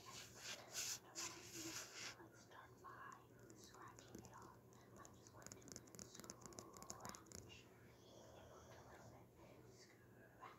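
Faint whispering, with soft scratching and rustling from a plastic cup handled right against the microphone.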